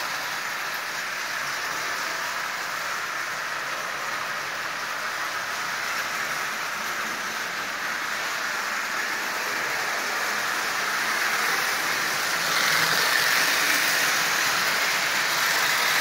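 Marx 898 toy train locomotive running on tinplate three-rail track: a steady whirring and rolling of its motor and wheels. It gets louder over the last few seconds as the train passes close.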